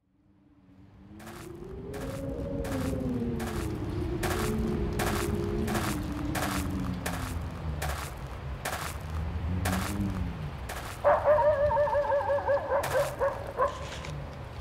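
Sound-effects intro fading in: footsteps crunching in snow about every 0.6 s over a low rumble and slow, gliding low tones. From about 11 s a loud, wavering high whine with a fast vibrato comes in.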